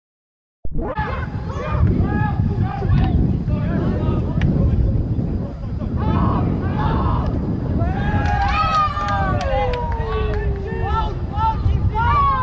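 Players and onlookers shouting across a soccer field, over wind on the microphone, starting after a brief silent gap. From about two-thirds of the way in comes a long, drawn-out shout falling in pitch, with a few sharp claps or smacks.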